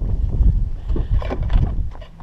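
Wind buffeting the camera's microphone, a loud low rumble, with a few knocks from the camera being handled and carried in the second half.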